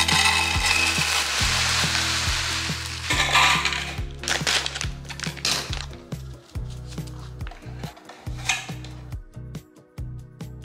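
Chia seeds poured from a bag into a clear plastic storage canister: a steady hiss for about the first three and a half seconds. After that, scattered light clicks and rustles as bundles of dry soba noodles are handled and packed into another canister.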